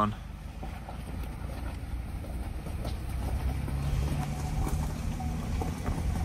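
Vehicle driving slowly on a wet road: a low steady engine and tyre rumble that grows slightly louder, with a faint engine hum joining about halfway.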